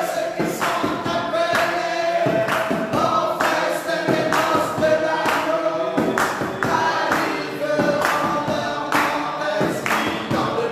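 A choir singing a gospel-style worship song, held sung notes over a steady beat of sharp percussion.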